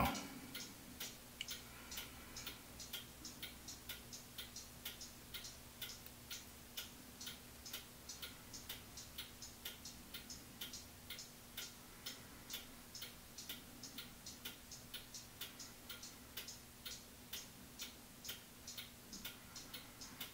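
Faint, steady ticking of a small clock, about two ticks a second, over a faint low steady hum.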